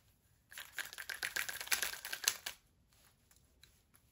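A burst of rapid clicking and rattling, about two seconds long, from a small penlight being fiddled with while it won't turn on.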